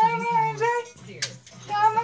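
A woman singing a song in a high voice, in sung phrases with held notes and a short break about a second in.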